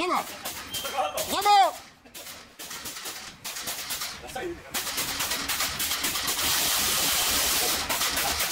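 Water spraying from a bike-wash hose wand onto a loaded touring bicycle: a steady, loud hiss that comes on about five seconds in. Earlier there is a brief vocal exclamation that rises and falls in pitch.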